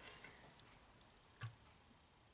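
Near silence, with a single light click of a metal serving spoon about one and a half seconds in.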